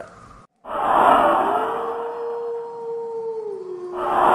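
An eerie, drawn-out howl sound effect over a hissing, wind-like noise. It begins about half a second in, rises slightly, holds one pitch, then drops lower near the end.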